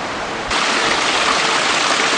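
Water running and splashing from a long row of temple water spouts: a steady rushing that gets suddenly louder about half a second in.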